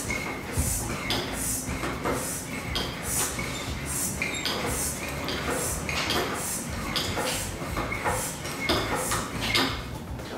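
Hand-worked floor air pump driven in a quick run of strokes, roughly two a second, each stroke a short hiss of air, building pressure inside a plastic bottle.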